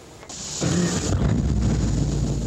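Houseboat engine running with a steady low rumble and some hiss, coming in about a quarter of a second in after a quiet moment.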